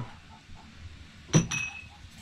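A single sharp clink of tableware against a plate a little over a second in, ringing briefly.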